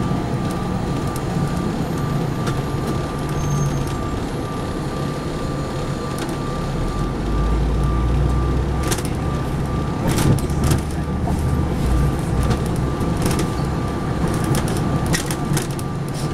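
Inside a Neoplan AN459 articulated transit bus under way: steady engine and road rumble with a thin constant whine. The rumble deepens about halfway through, and sharp rattles and clicks come through, mostly in the second half.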